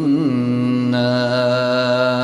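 Quran recitation: the reciter's voice holds a long drawn-out syllable on a near-steady pitch, with a brief melodic waver just after the start.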